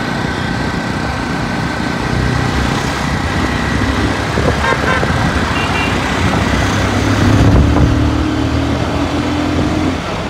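Motorcycle being ridden in city traffic: the engine runs under steady road and wind noise, and its note grows louder about seven seconds in. A short horn beep sounds about halfway through.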